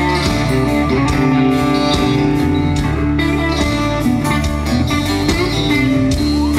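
Live country-rock band playing an instrumental passage: electric guitars over bass guitar and a steady drum beat, with no singing, heard from out in the audience.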